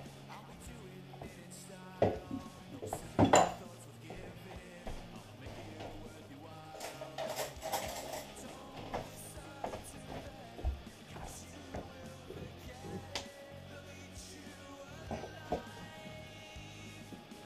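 Metal clanks and clinks from a stainless steel pot in a homemade apple press being worked loose: two loud knocks about two and three seconds in, then lighter clinks. A quiet heavy-metal backing track plays underneath.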